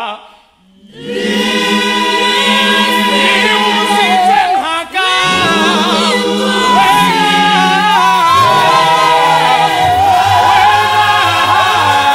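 A South African gospel choir singing a cappella in close harmony. The choir comes in about a second in after a short break, and there is a brief drop just before the five-second mark.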